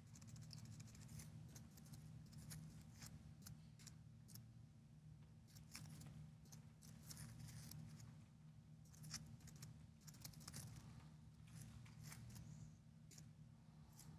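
Faint, irregular keystrokes on a computer keyboard, over a low steady hum.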